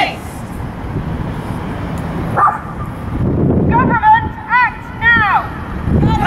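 Animal calls over a steady outdoor rumble: one short high call, then a quick run of four or five high, rising-and-falling calls.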